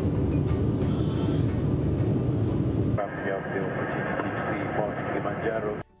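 Jet airliner heard from inside the cabin during the climb after takeoff: a steady, loud low rumble of engine and air noise. About halfway through the rumble drops away, leaving quieter pitched sounds, and everything cuts off abruptly just before the end.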